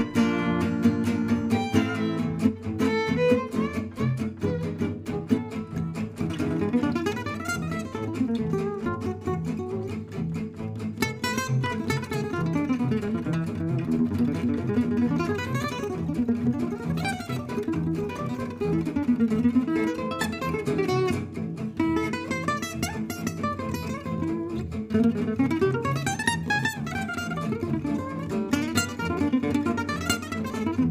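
Live gypsy jazz (jazz manouche) with a lead acoustic guitar on a Selmer-Maccaferri-style guitar playing quick rising and falling single-note runs. Underneath is a steady pulsing accompaniment from upright double bass and rhythm.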